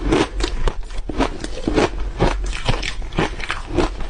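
Refrozen shaved ice coated in matcha powder being bitten and chewed: an irregular run of sharp crunches, several each second.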